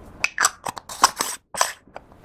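Metal screw lid of a small glass makeup pot being fitted and turned shut: a quick run of sharp clicks and scrapes, with a short break shortly after the middle.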